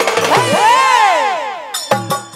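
Live stage-band music: drum strokes keep the beat for the first half second, then a pitched melody glides up and down and fades out. A sharp metallic clang comes near the end.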